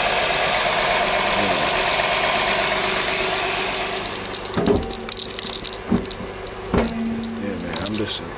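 Honda 3.5-litre VTEC V6 idling steadily with the hood open, shortly after a cold start. About four seconds in, the hood comes down and the engine sound dulls, with three thumps as the hood is lowered and shut.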